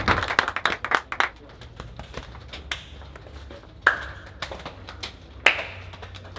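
Clapping in the first second or so, then a few separate sharp hand slaps, high-fives, each with a short echo.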